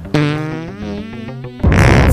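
A held, wavering pitched tone for about a second and a half, cut off by a sudden loud explosion sound effect near the end.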